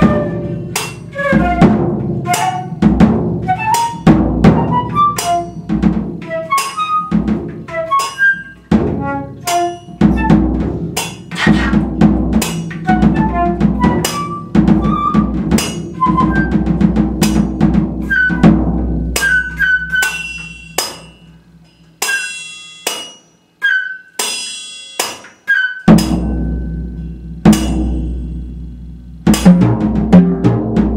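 Free-improvised flute and percussion duo: short, darting flute notes over rapid strikes on drums, cymbals and small metal percussion. About two-thirds of the way through, the playing thins to sparse, sharp ringing metallic hits with short silences between them, before fuller drumming returns near the end.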